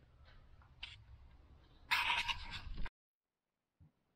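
Faint low hum with a couple of light clicks, then about a second of rustling, scraping noise that cuts off abruptly, followed by silence.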